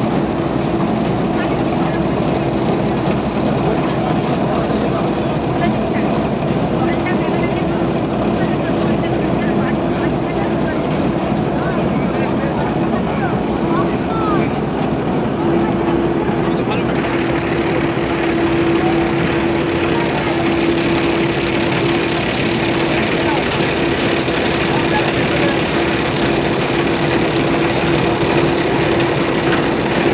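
An engine runs steadily at a constant speed with a steady hum, working tube-well drilling machinery. Faint voices are heard in the background.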